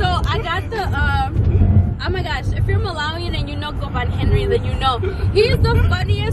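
A woman singing along, her voice bending and holding notes, over the steady low road rumble inside a moving car.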